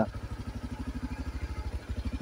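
Motorcycle engine running steadily as the bike is ridden slowly, an even, rapid pulsing beat that dips briefly near the end.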